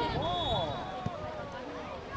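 Spectators along a soccer touchline talking and calling out over one another, several voices overlapping at once. A thin high tone sounds for about a second near the start, and there is a single tap about halfway.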